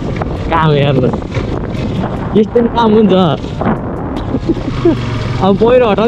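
A singing voice with wavering, drawn-out notes, heard over wind rushing on the microphone during a motorcycle ride.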